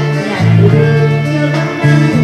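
Live band playing, with guitar prominent over held bass notes that change about a third of a second in and again near the end.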